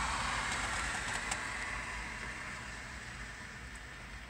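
Rolling noise of a freight train of empty autorack cars, a steady rumble and rail hiss that fades away as the end of the train recedes.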